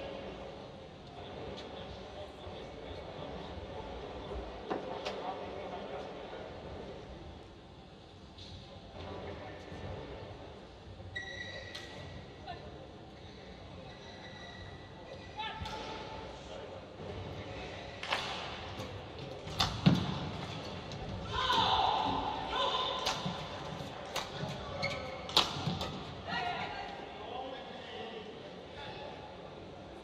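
Badminton rally in a large indoor hall: a run of sharp racket-on-shuttlecock hits and thuds of footfalls on the court, the loudest a heavy thud about twenty seconds in, with players' shouts. Before it there is a lull of low hall ambience with some voices.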